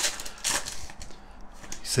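Foil trading-card pack wrapper crinkling and rustling as the cards are slid out, with a few short crinkles in the first half-second and soft handling noise after.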